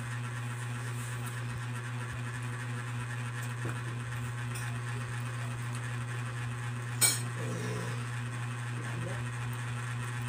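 A steady low hum throughout, with a few soft clicks and one sharp clink of a fork against a plate about seven seconds in.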